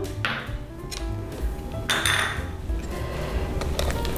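A utensil scraping cake batter around a stainless steel mixing bowl, two short scrapes, the second about two seconds in and louder, over steady background music.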